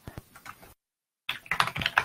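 Typing on a computer keyboard: a few scattered key taps, a short break about a second in, then a quicker run of louder taps near the end.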